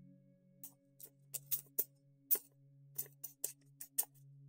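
A long-handled lens brush sweeping across a camera lens, heard as a dozen or so brief, irregular scratches and light clicks, over quiet ambient background music.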